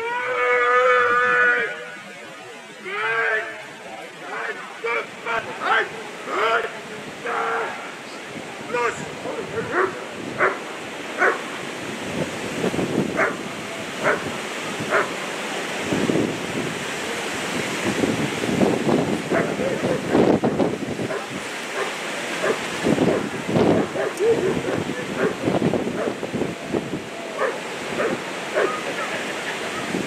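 A long, loud shouted command at the start, followed by a German Shepherd barking in short repeated barks, about two a second, as it guards the helper after releasing the bite sleeve.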